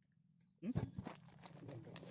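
Footsteps and rustling in dry fallen palm fronds and leaf litter as a person walks close by. It starts suddenly about half a second in, with irregular clicks and crackles.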